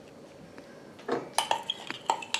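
Quiet for about a second, then a metal spoon clinking and scraping against the inside of a small glass jar, several quick clinks.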